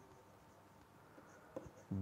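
Faint scratches and light taps of a stylus writing on a tablet, with a few small ticks in the second half.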